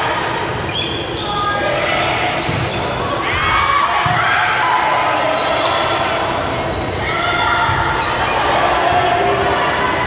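Volleyball rally in a gymnasium: a few sharp smacks of the ball being hit, echoing in the hall, over players calling out and spectators talking and shouting.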